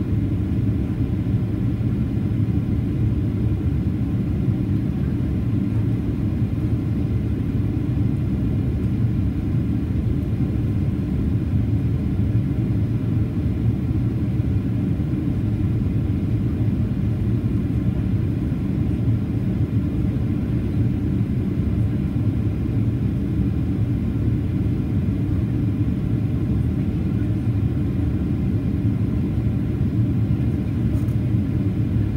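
Steady low rumble inside the cabin of a Boeing 737-800 in flight: the CFM56-7B turbofan engines and air rushing past the fuselage, heard from a window seat just ahead of the wing. The level holds even throughout, with a few faint steady tones over the rumble.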